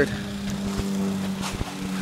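A steady engine drone holding one unchanging pitch.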